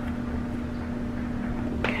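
A steady machine hum on one low pitch, over a low rumble, with one short sharp click just before the end.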